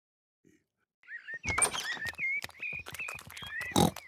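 Near silence for about a second, then cartoon sound effects: a rapid run of clicks and knocks under a high, wavering chirp, with a louder thump near the end.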